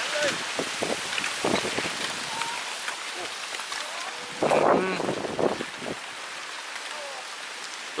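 Storm wind and the first rain of a summer thunderstorm, a steady rushing hiss that swells in gusts. A voice speaks briefly about halfway through.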